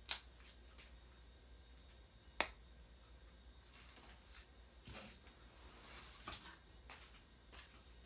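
Near silence with a few scattered sharp clicks: one at the start, a louder one about two and a half seconds in, and fainter crackles around five and six seconds.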